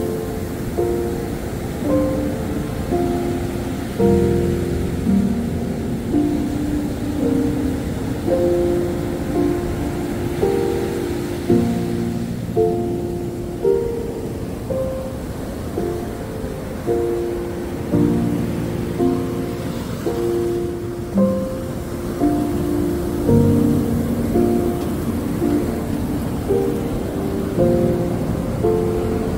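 A slow, gentle piano melody of single held notes, one every second or two, over a steady wash of noise like ocean surf.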